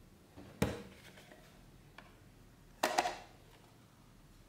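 Hard plastic clicks and clacks from handling an inkjet printer cartridge and pulling off its clear plastic protective clip: one sharp snap about half a second in, a faint tick near two seconds, and a quick cluster of clicks around three seconds.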